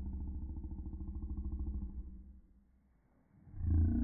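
A low, rough growl that holds for about two seconds and breaks off, then a second, louder growl starts near the end.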